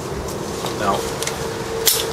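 A man says one word over a steady low background rumble. A faint steady hum sets in about halfway, and a single sharp click sounds near the end.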